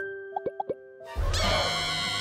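Three quick cartoon plop sound effects over a fading held music note. About a second in, a loud dramatic music cue with deep bass starts.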